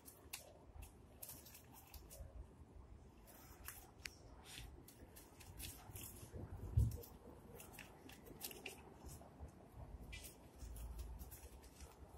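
Faint, irregular crackles and paper rustling from a stack of paper notes being handled and fed into a small fire in a metal brazier. A dull low thump about seven seconds in.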